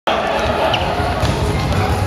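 Players' feet pounding on a hardwood gym floor as dodgeball players rush to the balls on the centre line, over voices of players and onlookers in a large echoing hall.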